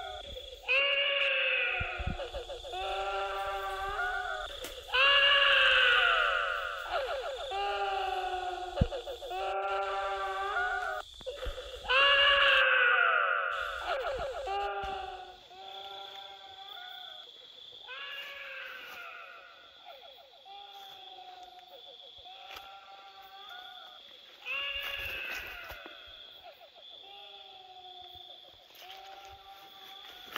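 A long run of wavering, wailing cries with a quivering pitch, one after another about every second, loudest around five and twelve seconds in and softer in the second half, over a steady high-pitched whine.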